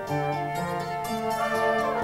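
Instrumental passage of a ballad, with no singing: held orchestral notes from strings and horn over a steady bass, and the chord changing about a second in.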